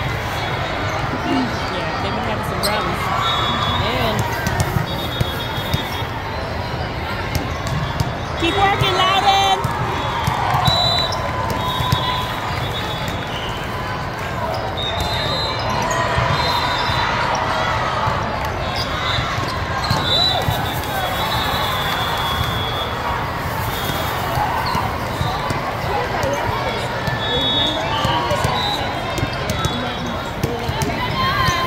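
Volleyball hall sound in a large hall: a steady hubbub of many voices chattering and calling out, with volleyballs being hit and bouncing on the court now and then, and short high squeaks or whistle tones scattered through it.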